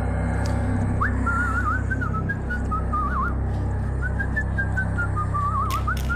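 Someone whistling a wavering tune in two short phrases over a low, steady droning horror-style music score.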